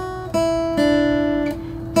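Acoustic guitar picking single notes over a D chord shape, a hammer-on figure played slowly. A few notes start about a third of a second and three-quarters of a second in and ring on.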